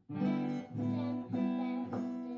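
Acoustic guitar strummed: four chords struck about every half second, each left ringing.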